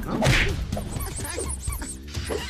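A sharp swish of a fast strike about a quarter second in, then a quick run of faint high-pitched chirps.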